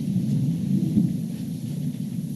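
A low, steady rumble of room noise on the meeting-room microphones, with no speech.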